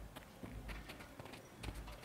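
Faint footfalls of a child running and turning on artificial turf, a few soft irregular taps.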